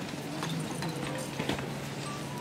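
Irregular footsteps and knocks of a procession of penitents on a stone cathedral floor, a few each second and echoing, over a steady low hum.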